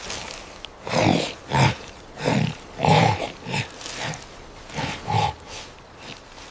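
A series of short, gruff ape-like calls from a group of primates, about one every half second to a second.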